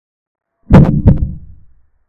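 Chess board software's piece-capture sound effect: two sharp clacks about a third of a second apart, each fading out quickly.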